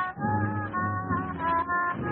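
1940s swing big band music: the band holds several steady notes together, changing them every half second or so, between sung lines. The old recording has a narrow, dull sound.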